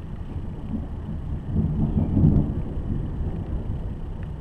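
Low rumble of a thunderstorm, swelling about two seconds in.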